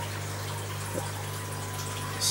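Aquarium water trickling and splashing over a steady low hum, the continuous running of a fish room's tank filtration and pumps.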